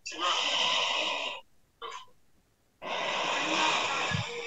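Heavy breathing into a microphone over a video call: two long, hissing breaths, each cut off abruptly by the call's audio gate.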